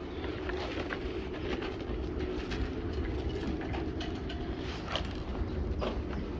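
Steady low rumble of an engine running, with a few faint light clicks scattered over it.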